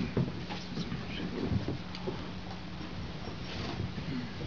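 Small scattered clicks and knocks of gear being handled on a pedal and effects table, over a steady amplifier hum.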